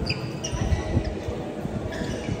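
Badminton players' footwork on an indoor court: repeated low thuds of feet on the floor and several short, high squeaks of court shoes.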